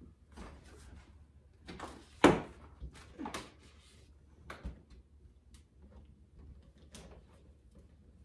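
Balloons being handled and pressed against a wall while one is fixed in place: scattered rustles and knocks, the loudest a sharp thump a little over two seconds in.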